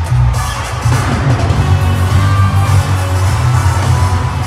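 Live concert music over an arena sound system, with a heavy, steady bass, and the crowd cheering.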